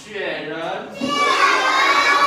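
A class of young children shouting out a Chinese word together in unison, the chorus swelling louder about halfway through.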